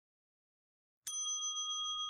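Silence, then a single bell-like chime struck about a second in, ringing on with a few steady high tones: a transition sound effect marking the next numbered section.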